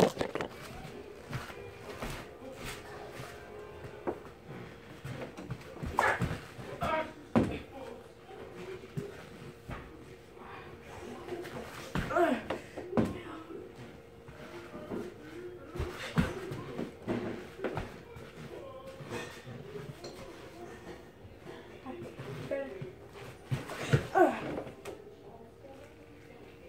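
Scattered knocks and handling noises from someone moving about a small room and setting things up, with brief bits of a voice and a faint steady hum.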